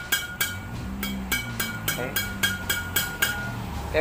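Strings of a Yonex Astrox 88D badminton racket, freshly strung with Exbolt string at 29 lbs, struck over and over with the hand to test their sound. A quick, even run of sharp pings, about three to four a second, each with a short high ring.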